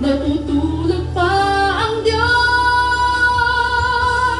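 A woman singing into a handheld microphone: a few shorter phrases, then one long held note through the second half.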